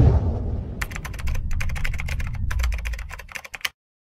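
Rapid keyboard-typing clicks, a dense irregular run starting about a second in and stopping abruptly shortly before the end, over the low rumble of a boom fading away.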